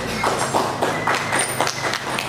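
A small audience clapping: quick, irregular hand claps with no let-up.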